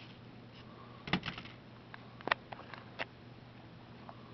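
Light clicks and taps of hand work: tweezers and paracord being worked through the hole in a small steel pry bar. There is a quick cluster about a second in, and single sharper clicks a little after two seconds and at three seconds.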